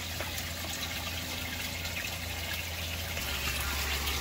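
Water trickling and churning steadily in an aquaponics radial flow settling tank, with a low steady hum underneath.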